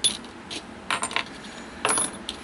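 Small drywall anchors and screws clinking against each other and the workbench as a hand picks them up: several short, light clinks spread over the two seconds, the loudest near the end.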